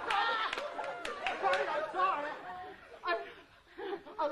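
A person's wordless moans and gasps, the pitch sliding up and down, trailing off briefly near the end before starting again.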